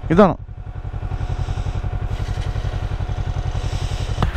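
Motorcycle engine idling, an even, steady low pulse that grows a little louder about a second in.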